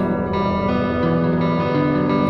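Instrumental stretch of a song between sung lines: sustained chords ring on while the low notes step down about a second in and climb again near the end.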